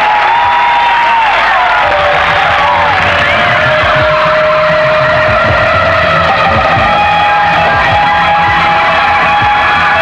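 Live rock band playing loud: a lead line of bending notes settles into a long held note, while drums come in about two seconds in.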